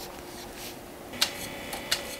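A click about a second in, then the steady whine of a small lathe's electric motor spinning a coil bobbin to wind copper wire onto it, with another click near the end.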